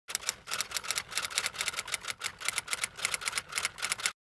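A rapid, even run of sharp mechanical clicks, about six a second, used as an intro sound effect.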